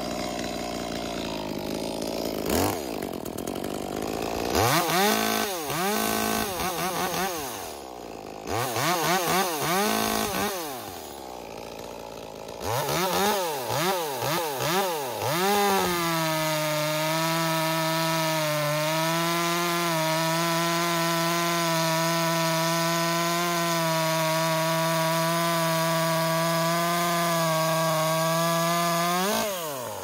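Echo 2511T top-handle two-stroke chainsaw, running with a ported cylinder and a drilled-out muffler with a welded, enlarged outlet, revved in a series of quick throttle blips and then held at wide-open throttle with no load for about thirteen seconds before the revs drop near the end.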